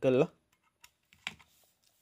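A few small clicks, the clearest a little under a second in and again just after, from handling a SkyRC iMAX B6 mini balance charger: a LiPo battery's balance plug pushed into its port and its buttons pressed.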